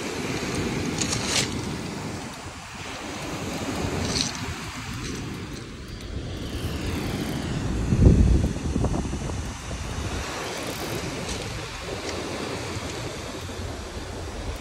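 Surf breaking and washing up a pebble beach, with wind buffeting the microphone; a strong gust hits the mic about eight seconds in.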